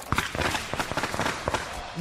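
A string of firecrackers going off: a rapid, irregular run of sharp cracks and pops over a crackling hiss.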